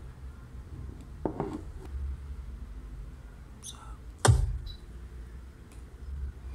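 Handling noises at a laptop desk: a few light clicks and taps and one heavy thunk about four seconds in, over a low steady hum.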